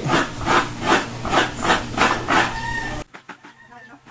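A coconut half being scraped against the toothed blade of a coconut grater stool, a rhythmic rasping of about three strokes a second as the white flesh is shredded into a bucket. The scraping stops short about three seconds in.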